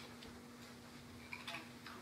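Near silence in a pause in speech: faint room tone with a steady low hum, and a few soft ticks about one and a half seconds in.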